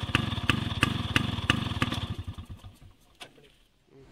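Yamaha RX135's 132 cc two-stroke single idling through its stock exhaust, with sharp, regular pops about three a second, then winding down and dying away about two to three seconds in.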